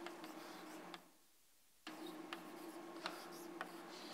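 Faint taps and scrapes of chalk writing on a blackboard, over a low steady room hum. The sound cuts out to silence for almost a second about a second in.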